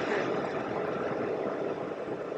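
Steady rushing air noise inside a car cabin, slowly fading.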